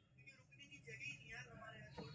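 Near silence with faint, distant voices talking in the background.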